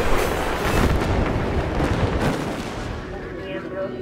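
A sudden loud boom like an explosion, its noisy rumble dying away over about three seconds, with music tones coming in near the end.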